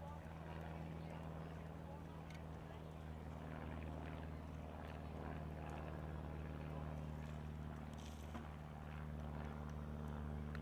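A steady low motor hum, like an engine or generator running, with faint indistinct voices in the background.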